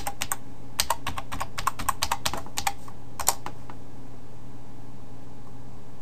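Computer keyboard typing: a quick run of keystrokes over about three seconds as a password is entered at a login prompt, ending with one louder key press.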